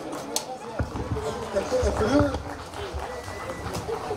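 Indistinct voices talking off-microphone, with a few dull low thumps.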